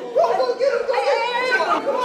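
Several teenagers' voices talking and exclaiming over one another, indistinct chatter with no clear words.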